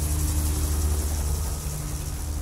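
A steady low rumble with a high hiss above it, starting to fade near the end.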